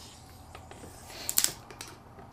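Screw cap being twisted open on a bottle of carbonated mate iced tea: faint small clicks, then a short burst of clicks and hiss about a second and a half in as the seal breaks and the gas escapes.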